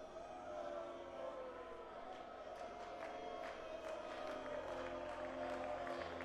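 A congregation praising aloud: many voices singing and calling out together, with scattered hand claps.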